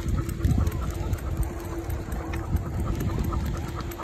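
Wind rumbling over the microphone while riding along a road, with a steady hum underneath and a few faint clicks.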